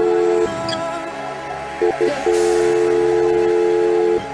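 Music from an Afro DJ mix: a held low chord breaks off about half a second in, returns with two short stabs about two seconds in, then holds again under steady higher tones.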